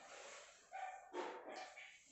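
A dog barking faintly, two short barks about a second apart.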